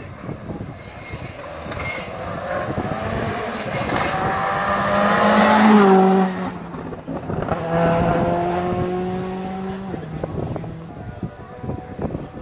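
Rally car passing at speed, its engine revving hard and climbing in pitch to its loudest about six seconds in. The note drops briefly, then climbs again as the car accelerates away and fades.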